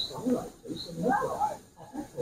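Quiet, indistinct voices of people talking.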